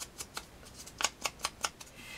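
Small stamping sponge dabbed against the edge of a die-cut cardstock heart to ink it, an irregular string of short, soft paper scuffs.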